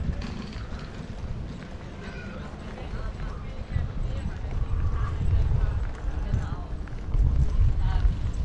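Outdoor ambience while walking a paved promenade: wind rumbling on the microphone, with footsteps on the paving and faint voices of passers-by. The wind grows louder in the second half.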